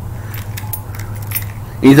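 A steady low hum with a few faint, light clicks in the middle, and a man's voice starting near the end.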